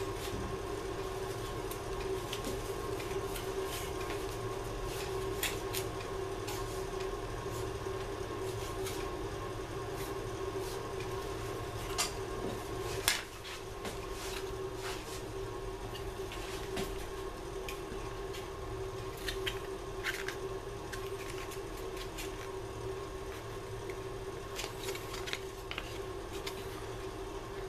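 A steady hum with a held tone, under scattered light taps and clicks as a thin wooden veneer is handled and pressed against a heated bending iron. A sharper knock comes about halfway, after which the hum is slightly quieter.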